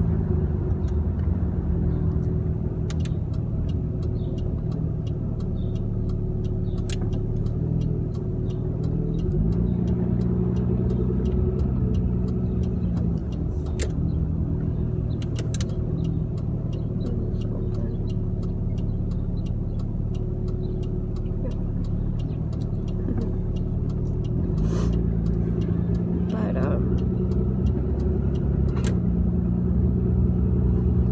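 Car engine and road noise heard from inside the cabin while driving. A steady rumble whose pitch rises three times as the car picks up speed, with a few small clicks along the way.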